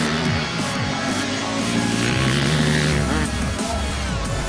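Background music with an enduro dirt bike's engine underneath, revving up and down as the bike is ridden.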